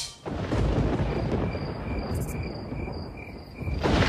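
Wind rumbling on a moving action camera's microphone, rough and unpitched. From about a second in until near the end, a run of short high chirps repeats about four times a second.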